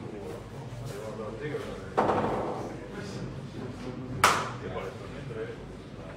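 Billiard balls being played on a boccette table: a sudden knock about two seconds in, then a sharp, louder clack of ball striking ball about two seconds later, over a low murmur of voices in the hall.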